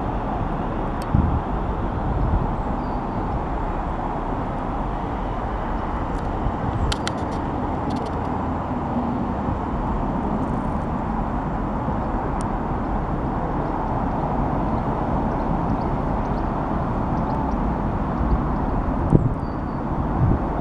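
Class 350 Desiro electric multiple unit pulling away along the track, a steady rumble of wheels and motors, with a few brief clicks partway through.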